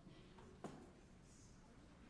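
Near silence: room tone of a hall, with a single faint, sharp knock about two-thirds of a second in.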